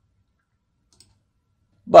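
A single faint computer-mouse click about a second in, against otherwise near silence.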